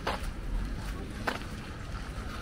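Footsteps crunching on a fine gravel path: two distinct steps, one right at the start and one a little over a second later, over a steady low outdoor rumble.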